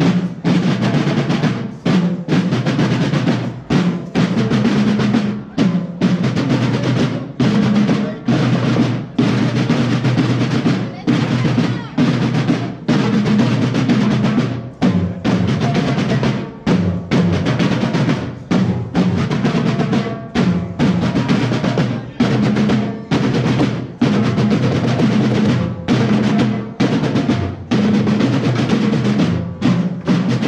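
Drums of a Mexican banda de guerra (drum and bugle corps) playing a steady march cadence of snare rolls and bass drum, repeating with short breaks about once a second.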